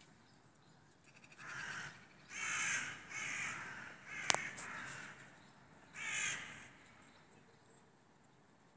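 Crows cawing in flight: about five harsh caws spread through the first six seconds or so, with one sharp click about four seconds in.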